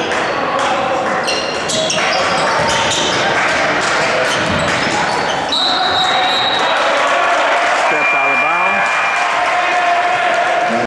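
Basketball game sound in a gym: a basketball bouncing on the hardwood amid shouting players and spectators' voices, echoing in the hall. There are two short high-pitched squeaks, the first about halfway through and the second near the end.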